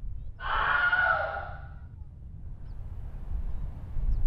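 A single long yell heard from a distance, starting about half a second in and lasting about a second and a half, over a low steady rumble.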